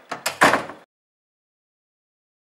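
A classroom door swinging shut: a couple of quick knocks from the latch, then a louder bang as it closes, cut off suddenly just under a second in.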